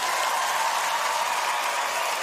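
Studio audience applauding steadily at the end of a dance performance.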